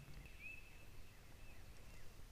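A bird calling faintly, a series of short high chirps about every half second, over an otherwise quiet background.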